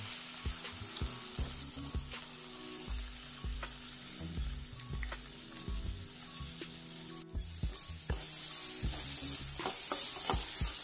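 Drumstick-leaf and egg stir-fry sizzling in a stainless steel pan, with occasional clicks and scrapes of a steel ladle. The sizzle grows louder about seven seconds in, as the mixture is stirred.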